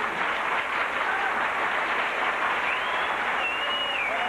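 Studio audience applauding, a steady dense clapping that holds at an even level.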